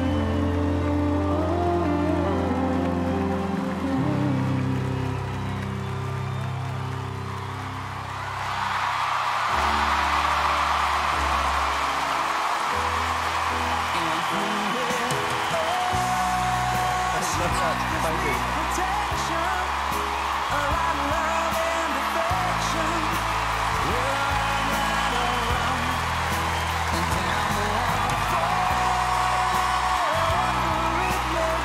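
Slow backing music with sustained low chords; about eight seconds in, a large theatre audience breaks into cheering and applause that carries on over the music.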